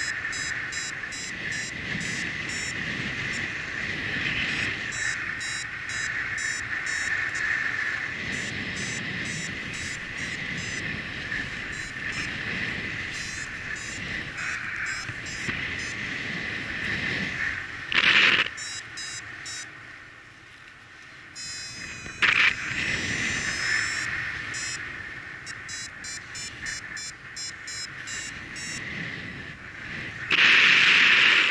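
Wind rushing over the microphone of a paraglider pilot's camera in flight, steady with two short, loud gusts about two-thirds of the way through.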